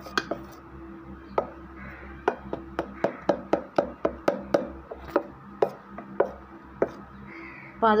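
A stirring utensil knocking against the side of a vessel while mixing dosa batter: sharp irregular knocks, a few at first, then about two to three a second in the middle, thinning out again near the end.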